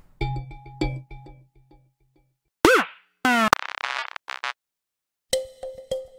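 Omnisphere synthesizer arp presets previewed one after another, each stopping short. First a plucked arpeggio over a held low note, then two brief tones that bend in pitch and a buzzy burst. From about a second before the end comes a plucked thumb-piano arpeggio, the Coffee Can Arp patch.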